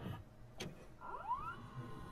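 Faint VCR tape-transport sounds as playback starts: a light click, then about a second in a short rising motor whine.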